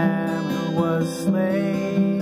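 Strummed acoustic guitar playing steady chords, with a man singing a held melody line that slides in pitch.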